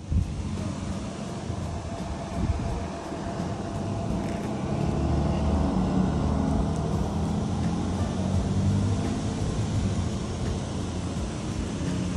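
Steady low rumble of outdoor background noise, with a faint hum in it and no clear events.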